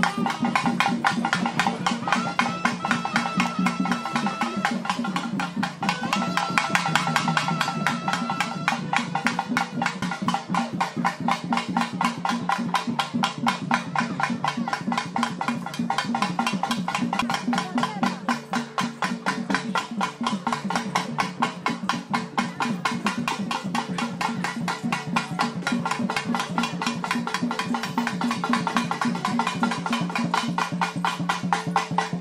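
Music carried by fast, steady drumming with a dense, even beat. A short high tone is held twice in the first ten seconds.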